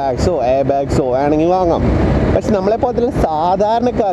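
Mostly a man talking while riding, over the steady running of the TVS Apache RR 310's engine and road and wind noise.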